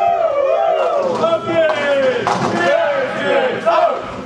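Several spectators shouting and cheering at once in long, drawn-out cries, the voices overlapping.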